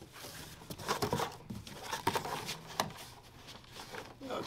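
A large cardboard shipping box being handled: its flaps folded shut, with cardboard rubbing and scraping and a few short knocks.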